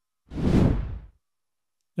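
A single whoosh transition sound effect, about a second long, swelling and then fading out.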